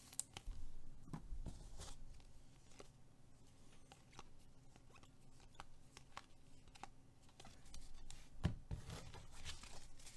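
Faint rustling and clicking of Finest baseball cards being flipped and slid against one another in the hands, with a louder flurry of card handling near the end.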